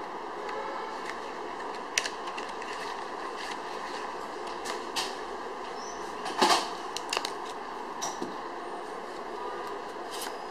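Modiano Cristallo plastic playing cards and their box being handled on a cloth table: a few scattered sharp clicks and taps, the loudest about six and a half seconds in, over a steady background hiss.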